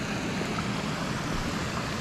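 Steady rush of creek water running over rocks and spilling down a low concrete spillway.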